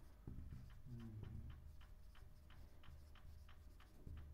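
Near silence with faint, evenly spaced ticking, about four to five ticks a second, over a low steady hum.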